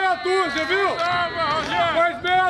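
People talking: continuous conversational speech with no other clear sound.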